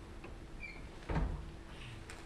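A single dull thump about a second in, over a faint steady hum in a quiet lecture room.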